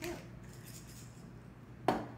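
A hand-twisted pepper mill grinding faintly over the bowl, then one sharp knock as the mill is set down on the stone countertop just before the end.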